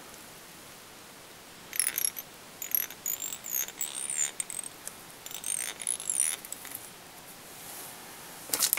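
Fly-tying thread pulled tight from the bobbin in turns over a pinched bunch of bronze mallard wing fibres: a series of short scratchy pulls over about four seconds, several with a high squeak that wavers in pitch.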